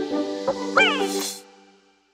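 The closing bars of a song: sustained synth chords and a beat, with a short high cry falling in pitch about a second in and a brief burst of hiss. The music then fades out to silence before the end.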